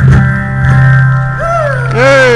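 Live band with guitars played through the stage PA, ending a song on a long held chord with a steady bass note. Near the end a gliding pitched sound rises and falls over it.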